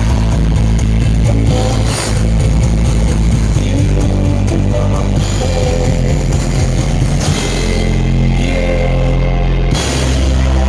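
Live rock band playing loudly through a concert PA, heard from within the audience: sustained bass and chords with guitar over drums, and no lead vocal. The low notes change a little past seven seconds.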